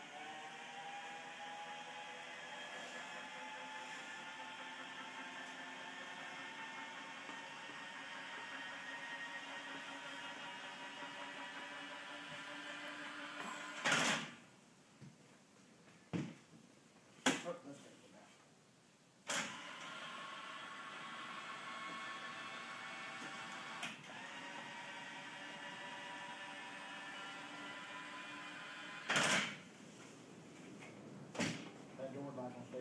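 Wheelchair lift motor running with a steady hum as the platform rises, stopping with a clunk about fourteen seconds in. A few knocks follow, then the motor runs again for about ten seconds and stops with another clunk.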